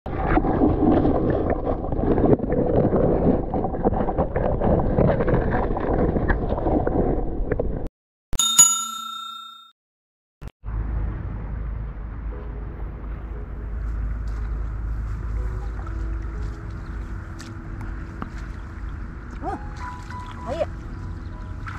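A bright bell chime, like a notification ding, rings about eight seconds in and fades away over about a second and a half. Loud, dense sound comes before it and ends abruptly, and steady low outdoor noise follows after a short silence.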